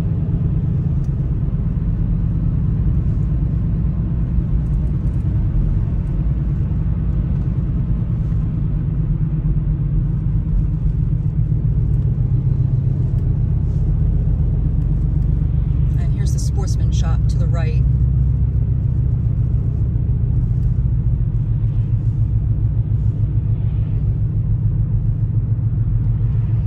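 Steady low rumble of a car's engine and tyres, heard from inside the cabin while driving at road speed.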